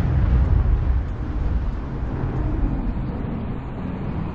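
A loud, steady low rumble of noise with no clear pitch, heaviest in the bass, easing a little over the seconds.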